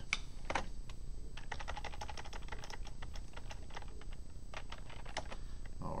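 Typing on a computer keyboard: a few separate keystrokes, then a quick run of them, then a few scattered ones.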